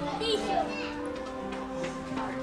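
Children's voices, with a brief high-pitched call a quarter of a second in, over background music of long held notes that step slowly in pitch.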